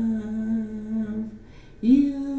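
A woman's unaccompanied voice holding one long low note for about a second and a half, then a brief breath and a new note sliding up in near the end.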